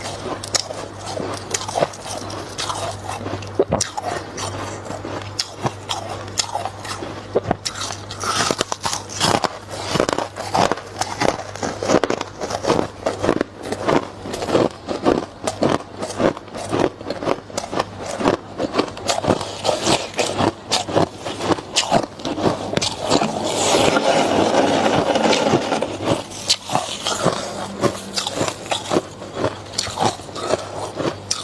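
Freezer frost being scraped up by gloved hands and crunched between the teeth, close to the microphone: a dense run of crisp crunches and crackles, with a longer continuous scrape about two-thirds of the way through.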